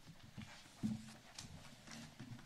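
Faint rustling and scattered knocks of papers and documents being handled on a table as pages are turned, with a louder low thump a little under a second in.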